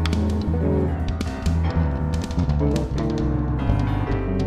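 Jazz-rock band music: a drum kit beating steadily under deep, moving bass notes and sustained keyboard chords.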